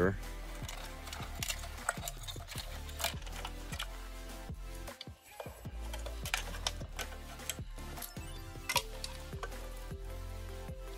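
Background electronic music with a steady low bass, with light clicks and rustles of hands handling the plastic hoverboard shell and its wiring.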